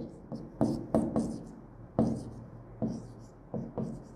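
Stylus writing on the glass face of an interactive whiteboard display: a string of about nine irregular sharp taps with brief strokes between them.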